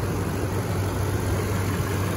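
2017 Toyota Tundra's 5.7-litre V8 idling quietly and steadily with the hood open.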